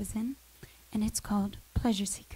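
A woman speaking into a handheld microphone: a few short phrases with a brief pause about half a second in.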